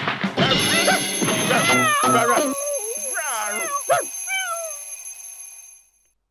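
Cartoon sound effects: an alarm clock bell ringing while a cat yowls and other animal cries slide up and down, dying away near the end.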